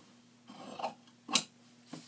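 Fabric shears cutting through cloth: a soft rasp of the blades moving through the fabric, then one sharp snip a little past halfway.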